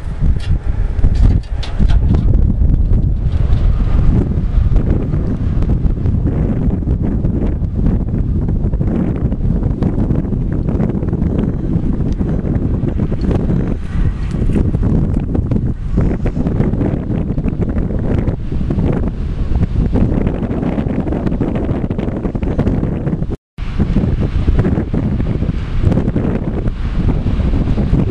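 Loud wind buffeting the microphone: a gusting, low rumble of noise, broken by a split-second gap about twenty-three seconds in.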